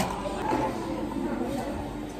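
Faint background chatter of voices in a room, after a single sharp click at the very start.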